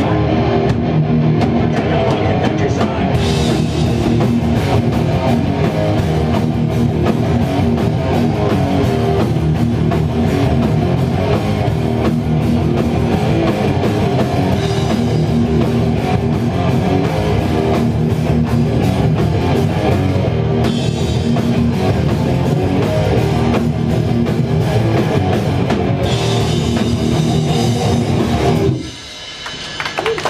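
Hardcore band playing live: loud distorted guitar and a drum kit. The song cuts off abruptly near the end.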